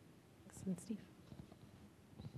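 A brief soft spoken word or two, quiet and partly whispered, about half a second in, over faint room tone.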